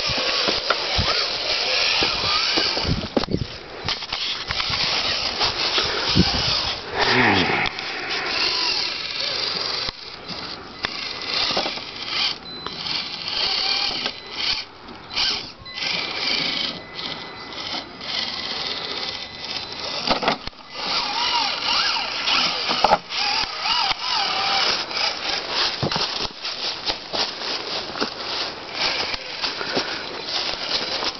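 Electric motor and gearbox of a scale RC rock crawler whining as it is driven up over rocks, with knocks and scrabbling from its tyres and rustling of dry leaves.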